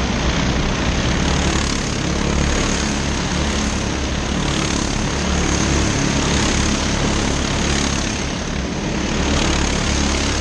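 Engines of a pack of racing go-karts running at speed on the circuit, a steady buzzing mix as several karts pass close by.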